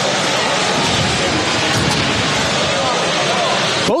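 Loud, steady din of a robot-combat arena: crowd chatter blended with the whir of the combat robots' electric drive motors as they manoeuvre.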